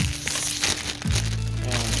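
Thin plastic bag crinkling as model-kit parts are handled, over background music whose low bass notes come in about a second in.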